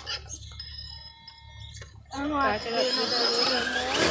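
Faint steady whine of a scale RC rock crawler's electric drive as it creeps onto a boulder, with a few light clicks, for about two seconds; then people's voices take over.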